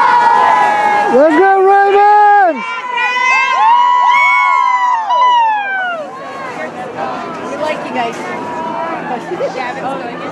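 Football crowd in the stands cheering and yelling with drawn-out voices as the kickoff is set up. One long held yell stands out about a second in, and the shouting dies down to scattered chatter about six seconds in.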